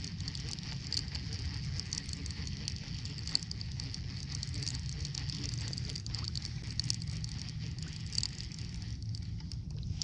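Steady low rumble of wind and water around a small paddle craft on open sea, with a fine crackle of small irregular ticks.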